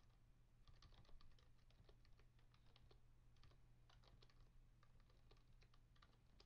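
Faint computer keyboard typing: irregular key clicks as numbers are entered, over a low steady hum.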